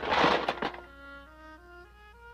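A clattering crash of junk lands in the first half second or so, then soft orchestral notes follow one at a time, stepping upward in pitch.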